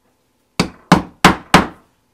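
A mallet striking a multi-prong stitching chisel four times, about a third of a second apart, punching stitch holes through a thin leather patch; each strike is sharp and rings briefly.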